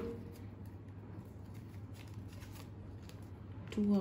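Faint rustling and light ticking of tarot cards being handled as a card is drawn from the deck and laid on the table, over a low steady hum.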